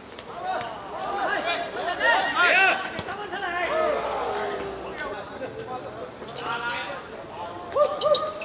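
Several men shouting and calling out across a football game on a hard court, loudest about two to three seconds in, with scattered thuds of running feet and ball contacts.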